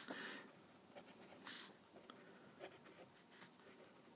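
A few faint, short scratches of a fineliner pen on sketchbook paper as small marks are drawn, the clearest about one and a half seconds in.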